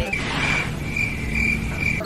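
Crickets chirping: a high trill that pulses about every half second over a steady low hiss. The music and talk drop out around it.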